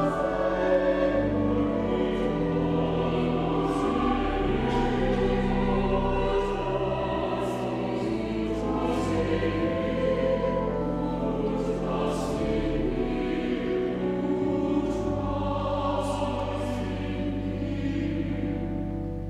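Church choir singing in parts over sustained low notes.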